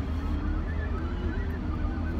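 Low, steady rumble of a car's engine and road noise heard inside the cabin, with a faint wavering pitched sound over it.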